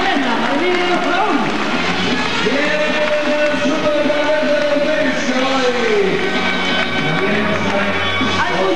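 Men singing live into microphones over band music, with crowd noise from a large audience; a long held sung note runs through the middle.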